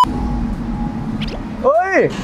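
Steady low background rumble with a faint hum, then a man's drawn-out exclamation about 1.7 seconds in.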